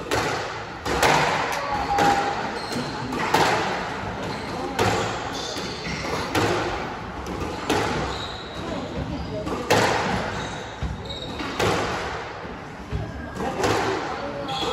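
Squash rally: a squash ball struck by rackets and hitting the court walls, a sharp crack about every second and a half, echoing in the court.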